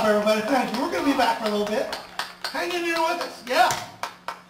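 Hand clapping with a voice calling out over it, the voice sliding in pitch and rising sharply near the end.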